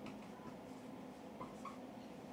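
Dry-erase marker writing on a whiteboard, faint scratching strokes, then two short high squeaks of the marker tip about one and a half seconds in, over a low steady room hum.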